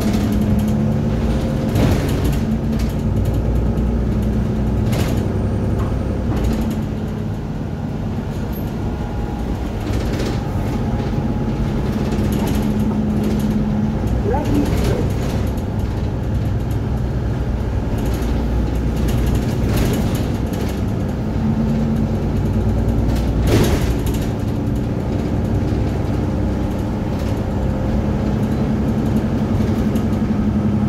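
Mercedes-Benz Citaro single-deck bus heard from inside the passenger saloon while under way: a steady low engine and drivetrain drone that rises and falls several times with the bus's speed. Occasional knocks and rattles from the interior fittings come through, the loudest about two-thirds of the way in.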